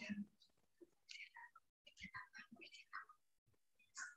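Near silence with faint, broken speech, like whispering or a distant voice over a weak call connection.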